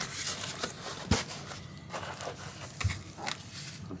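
Unboxing handling noise: a paper packing slip rustled and picked up from a cardboard shipping box. There is crackly scraping throughout, with a sharp knock about a second in and a duller one near three seconds.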